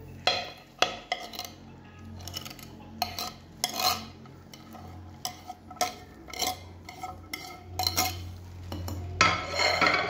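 A wire whisk clinking and scraping against a glass mixing bowl and a cutting board as chopped vegetables are pushed into batter, in irregular strokes, with a louder, longer scrape near the end.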